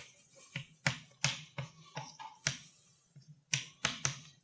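Chalk writing on a blackboard: a string of sharp, irregular chalk taps and short strokes, about two a second, as a formula is written.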